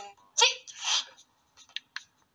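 A short, breathy vocal exclamation from one person: a brief voiced start that turns into a hiss, then two faint ticks near the end.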